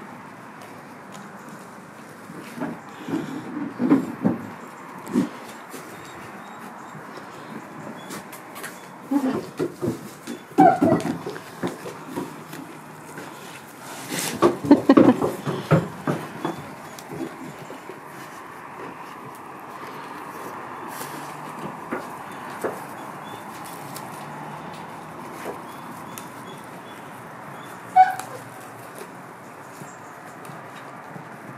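Goat pulling and chewing leaves off a leafy branch, the branch rustling, in irregular bursts of a few seconds with quieter stretches between. A single sharp knock sounds near the end.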